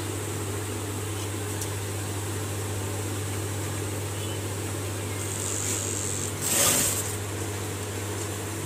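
Industrial sewing machine's motor humming steadily while a zipper is sewn onto white fabric, with one short, louder burst of sound about six and a half seconds in.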